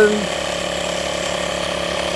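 Handheld electric air inflator's compressor running steadily with a fast, even mechanical clatter. It is pressurising an air rocket's chamber, climbing from the high 70s towards 105 psi.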